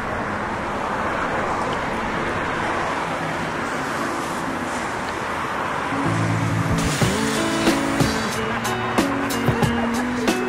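Steady noise of road traffic passing. About six seconds in, music enters with held notes, and from about seven seconds a beat of sharp percussive hits comes in over it.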